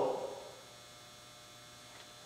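Faint, steady electrical mains hum under quiet room tone, with the tail of a spoken word fading out in the first half second.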